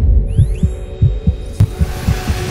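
Designed cinematic sound bed: a quick run of deep bass thumps, each falling in pitch, about three a second, over a steady hum. A high whine rises and then holds just before a second in, like a small FPV drone's motors spinning up, with a sharp click near the end.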